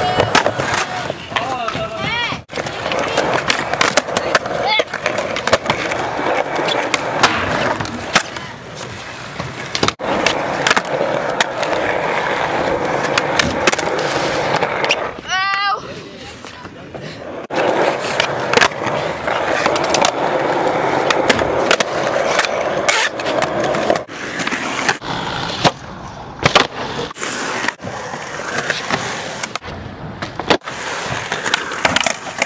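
Skateboards rolling on concrete ramps, with repeated sharp clacks of boards being popped and landing during flip tricks. The audio is spliced from several clips with abrupt cuts, and voices call out briefly now and then.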